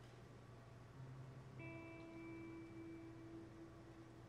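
Faint, soft keyboard music from a Nord stage keyboard: a quiet held chord that comes in about one and a half seconds in and fades before the end.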